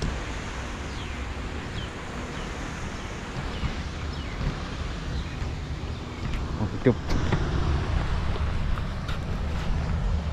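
Steady low rumble of wind buffeting an outdoor camera microphone, with a few faint high chirps over it.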